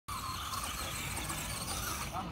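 Electric motor of a Traxxas Rustler radio-controlled truck whining as the truck drives, the whine strongest in the first half second, over a steady hiss.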